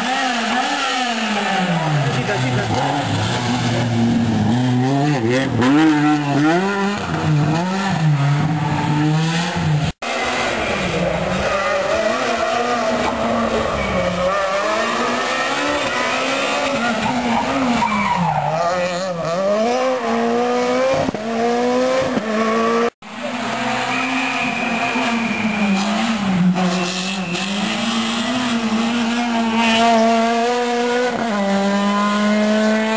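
Rally car engines at full throttle, the revs rising and falling again and again through gear changes as the cars race along the stage, in three stretches broken by abrupt cuts about a third and three quarters of the way in.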